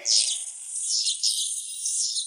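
High-pitched hissing, crackling electric sound effect marking the hero's lightning power, fluttering unevenly throughout.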